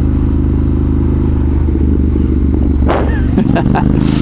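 Honda CTX700N's 670cc parallel-twin engine running at a steady pitch as the motorcycle cruises, heard from the rider's seat. A short burst of voice cuts in about three seconds in.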